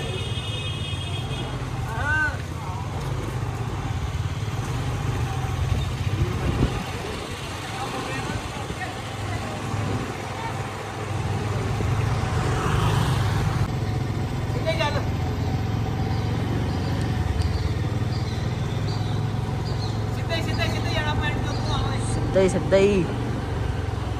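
Motorcycle engine running steadily at low speed, with brief voices now and then.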